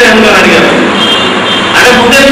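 A man speaking loudly into a handheld microphone in a lecture, his voice amplified.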